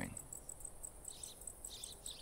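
Crickets chirping faintly in a steady high-pitched pulse, about five chirps a second, with a couple of softer, lower chirps in the second second.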